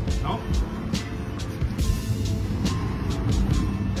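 Background music with a steady beat, over street noise with traffic.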